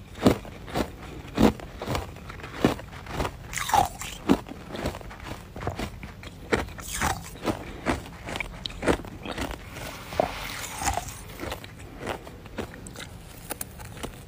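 Powdery freezer frost being bitten and chewed: a run of short crunches about two a second, softer and sparser in the last few seconds.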